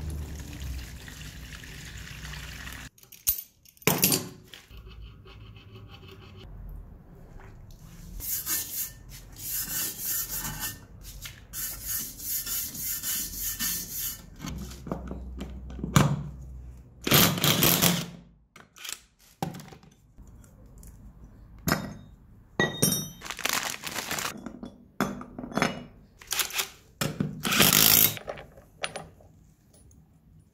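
Workshop tool sounds: metal clanks and knocks from tools and parts, with short runs of a cordless impact wrench on the rear sprocket nuts; the loudest knock comes about halfway through.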